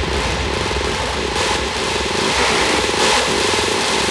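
Trance music from a DJ's vinyl mix in a stretch without the kick drum: a dense, steady synth texture over a rapidly pulsing bass.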